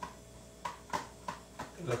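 Several light clicks or taps, about five over a second and a half, from hands working at the counter. A man's voice starts near the end.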